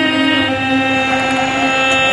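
Women's choir singing, holding one long steady note.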